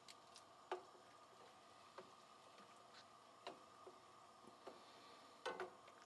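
Faint, irregular ticks and small pops from cider braising liquid coming up to a boil in an enamelled cast-iron pot, over a faint steady hum. Near the end, a slightly louder clack as metal tongs go into the pot.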